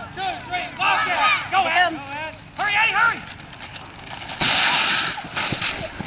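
High-pitched children's voices shouting together in short rising-and-falling calls, then a loud rush of noise about four and a half seconds in as the players break through a paper run-through banner.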